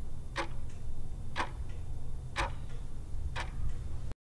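Countdown-timer sound effect: clock ticks, one a second, over a steady low hum.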